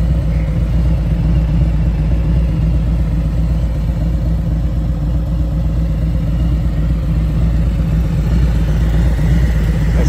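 2022 Harley-Davidson Street Glide Special's Milwaukee-Eight V-twin idling steadily through its aftermarket pipes, a loud, even low rumble.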